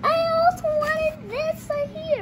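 A young child's high-pitched voice in sing-song excited calls: several long held notes, the last sliding down in pitch near the end.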